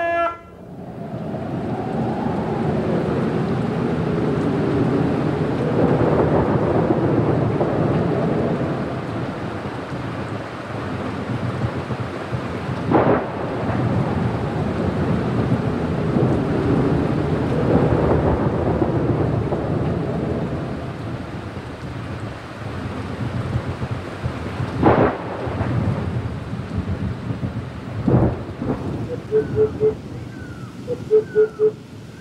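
Thunderstorm: steady rain with rolling thunder that swells and fades in slow waves, and sharp claps of thunder about 13 and 25 seconds in and again near the end.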